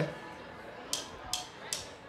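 Drummer counting in the song with three light, evenly spaced hi-hat taps, about 0.4 s apart, over a quiet room. The last tap leads straight into the band's first beat.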